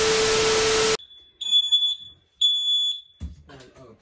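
About a second of loud TV-static hiss with a steady test tone, which cuts off. Then a ceiling smoke alarm sounds high-pitched beeps, each about half a second long, roughly once a second, with a dull thump between them near the end.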